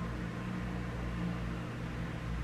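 Steady low hum with an even hiss, the background noise of a small room, with no other event.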